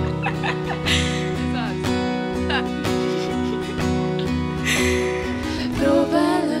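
Steel-string acoustic guitar strummed in a steady rhythm, ringing sustained chords, with a few short bits of voice over it.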